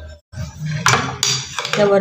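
Metal spoon clinking against a steel pot while stirring gulab jamuns in sugar syrup, with two sharp clinks about a second in.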